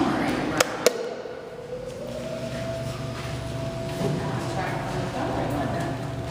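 Two sharp clicks close together, then from about two seconds in a steady whine of elevator machinery as a Montgomery elevator car runs in its shaft.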